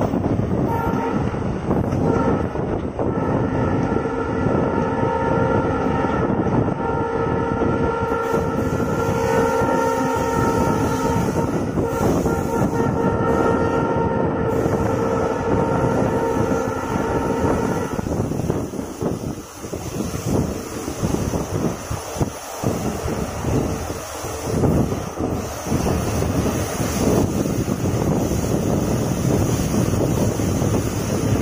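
Passenger train running, heard from an open coach window: steady rumble and wheel clatter, with a long held multi-tone whistling sound over the first eighteen seconds or so. After that, gustier rushing noise.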